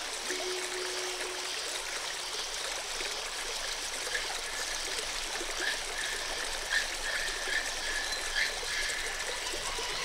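Running water trickling, a steady hiss, with a low held tone fading out in the first two seconds and a few faint short high tones in the second half.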